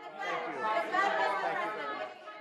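Many voices talking over one another in a large room, with no single voice standing out.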